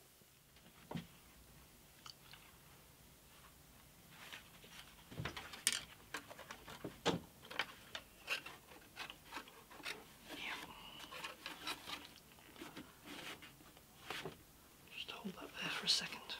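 Gloved hands handling a thin bent walnut guitar side against an MDF bending mould: one light knock about a second in, then from about four seconds a run of irregular light taps, clicks and rubs of wood on wood.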